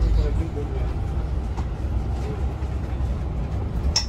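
Cabin of a moving airport shuttle bus: a steady low rumble of engine and road noise. A single sharp click comes right at the end.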